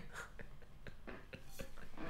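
Near-silent laughter: quiet breathy wheezes and gasps, with faint clicks.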